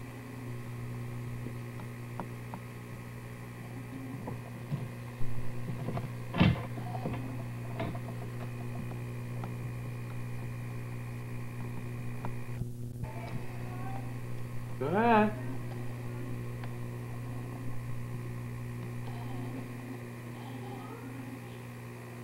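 Steady low electrical hum on an old home-video recording, with a couple of sharp knocks about five and six and a half seconds in. Near fifteen seconds there is a brief voice-like sound rising in pitch.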